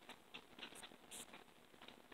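Near silence: room tone with a few faint, scattered light ticks.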